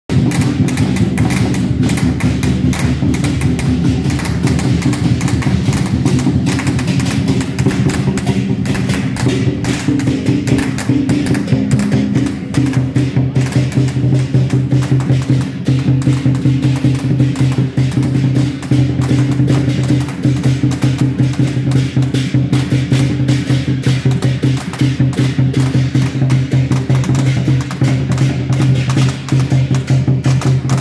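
Taiwanese temple-procession music: loud, fast, dense drum and wood-block percussion over sustained low pitched tones, playing without a break.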